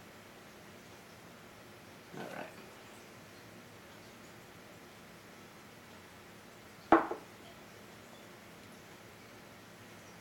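A single short, loud slurp about seven seconds in, as a man sips whiskey from a tasting glass. Otherwise quiet room tone.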